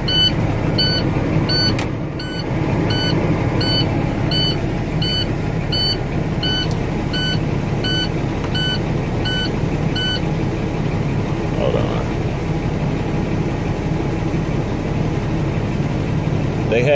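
International semi-truck's diesel engine idling steadily, heard from inside the cab. Over it, a dashboard warning chime beeps evenly, a little under twice a second, and stops about ten seconds in.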